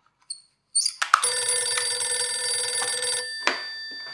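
Old rotary desk telephone's bell ringing: one ring about two seconds long that then fades, followed by a clack as the receiver is picked up.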